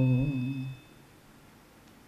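A man's voice holds the last sung note of a chanted line of Sikh invocation verse and fades out under a second in. A pause follows, with only a faint steady high-pitched tone.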